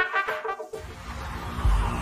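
Electronic dance music in a DJ mix. The kick drum drops out at the start, and a low bass line comes back in under a second later. The kick returns near the end, as in a breakdown or a change of track.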